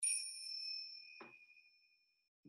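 A small bell struck once, ringing with a few clear high tones that fade away over about two seconds, with a soft tap about a second in.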